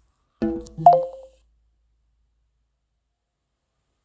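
Short electronic chime from an Android phone as it reads an NFC tag: a brief pitched tone that steps down in pitch about a second in.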